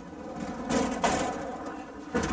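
Metal mesh gate of a construction hoist cage being handled, a clattering rattle that peaks around the middle, over a steady hum.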